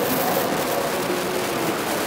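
A steady hiss of background noise, even and without any distinct event, in a pause between a man's sentences.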